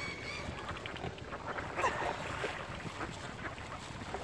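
Wind on the microphone and small lake waves lapping at the shore, with a brief waterfowl call about two seconds in.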